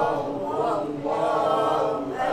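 Several voices reciting Arabic Quranic verses together in a slow, drawn-out chant, the held syllables rising and falling with a short break about a second in.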